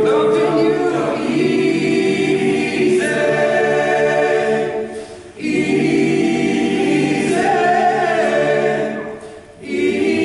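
Men's a cappella choir singing sustained chords in phrases, with short breaks about five seconds in and near the end.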